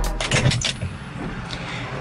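Background music cuts off right at the start, leaving a steady outdoor rush of noise with a few light clicks and rattles in the first second.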